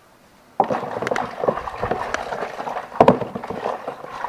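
Water sloshing and splashing in a plastic foot basin of soapy water. It starts suddenly about half a second in and has a few sharper splashes, the loudest about three seconds in.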